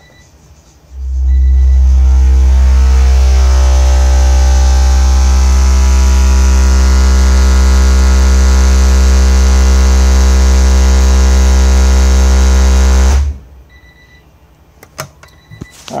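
EMF Lowballer 12-inch subwoofer playing a very loud, steady low bass tone during an SPL run, which the meter reads as 149.9 dB at 744 watts. The tone comes in about a second in, holds for about twelve seconds and cuts off abruptly when the track ends.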